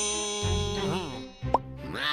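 Cartoon background music under a character's wordless vocalizing, with a short rising pop sound effect about one and a half seconds in.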